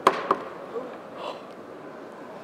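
A heavy steel ball strikes a phone's glass screen with a sharp crack, followed by a smaller knock about a quarter second later.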